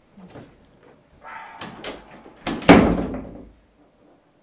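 A door is handled and then slammed shut about two and a half seconds in, a single loud bang that dies away over most of a second. Smaller knocks and rattling come before it.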